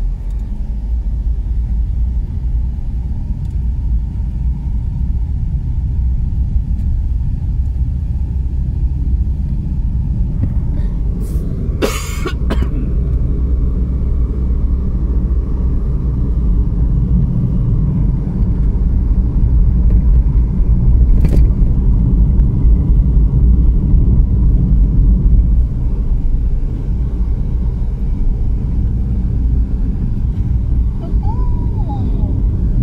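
Car cabin noise while driving on a highway: a steady low rumble of road and engine, growing somewhat louder past the middle. A short, loud sharp noise about twelve seconds in and a briefer click about twenty-one seconds in.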